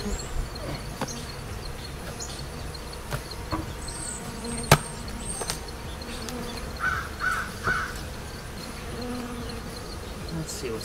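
Honeybee colony buzzing in an opened hive, with scattered knocks and scrapes of the wooden hive parts as the top feeder is lifted off, and one sharp click about halfway, the loudest sound.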